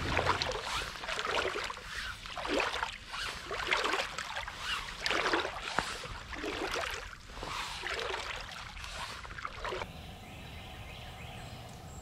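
Boots wading through shallow flooded swamp water, sloshing and splashing with each step, roughly once a second. The wading stops about ten seconds in, leaving a faint steady outdoor hush.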